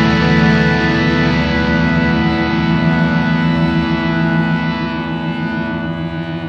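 Instrumental progressive/stoner rock: a dense sustained chord rings on with no drum hits and slowly fades.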